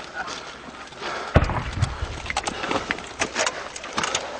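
Gunfire: one loud report about a second and a half in, followed by a low rumble, then scattered sharper cracks. Indistinct voices run underneath.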